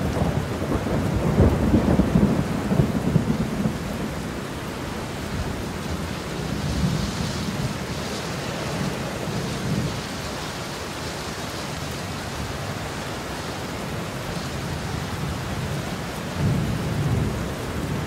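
Steady rain falling with low rolls of thunder, the heaviest a second or two in and again near the end.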